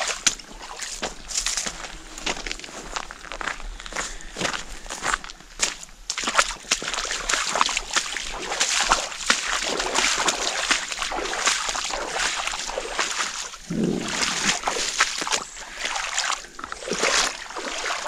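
Hiker's boots sloshing and splashing through standing water on a flooded trail, step after step.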